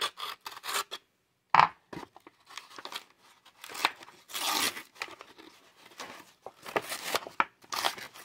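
The paper backing of a retail blister pack of basketball cards being torn open by hand: a series of short, irregular rips and crinkles, with the longest rip a little past the middle.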